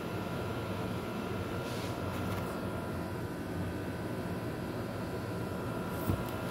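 Steady machine hum with a low rumble and a faint steady high tone, from a running motor such as a fan or appliance.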